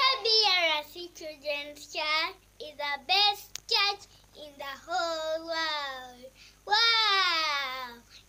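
A young girl singing alone without accompaniment, in short phrases broken by brief pauses, then two long notes that slide down in pitch in the second half.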